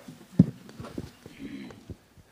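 A few short knocks and clicks close to the microphone, the loudest about half a second in, with faint voices murmuring.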